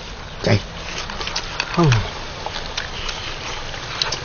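Bamboo chopsticks clicking lightly and irregularly against ceramic rice bowls during a meal, over a steady background hiss.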